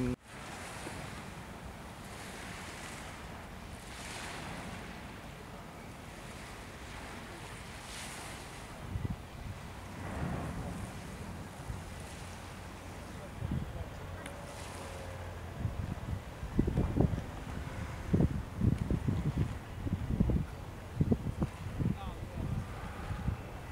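Wind and small waves washing on the beach make a steady rushing noise. Low buffeting thumps of wind on the microphone grow more frequent in the second half.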